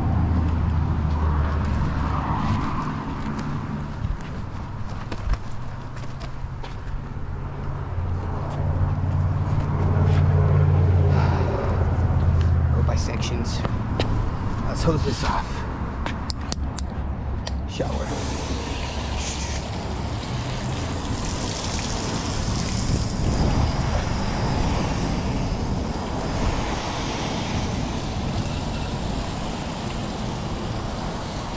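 Through the first half, a low hum with scattered clicks and scrapes of wash tools. A little past halfway, a garden-hose spray nozzle starts hissing steadily as water rinses soap off a pickup truck's front end.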